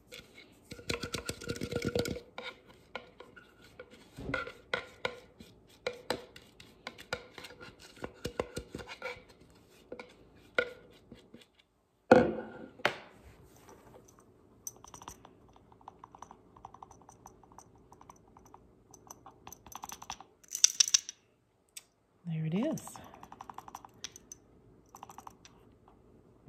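Plastic blender cup and plastic funnel tapped and knocked against each other and the counter to shake ground paprika powder out into a small glass spice jar. A quick run of taps comes first, then scattered clicks and light knocks, with one sharp knock about halfway through.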